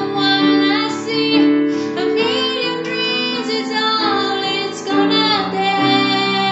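A woman singing a slow melody with long held notes, accompanied by chords on a digital piano keyboard.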